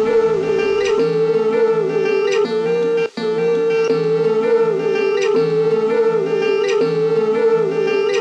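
Background instrumental music with a sustained melody and a regular beat. The sound drops out for an instant about three seconds in.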